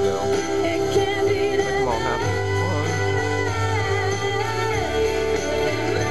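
Music: a song with guitar and singing, playing steadily.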